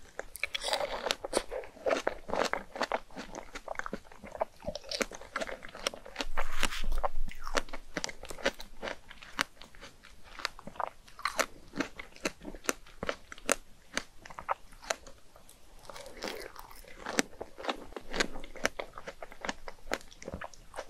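Chewing and biting into fresh strawberries with chocolate whipped cream, full of quick sharp mouth clicks. The loudest stretch is a burst of chewing about six to seven seconds in.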